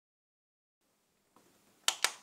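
A single sharp plastic click near the end as a button on the front of a pink Groov-E portable CD player is pressed, over faint hiss.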